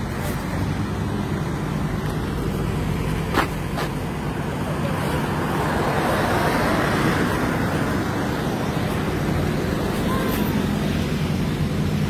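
Car engines idling in a queue with street traffic noise: a steady low engine hum, with a louder rush of passing traffic about five to eight seconds in. Two short clicks about three and a half seconds in.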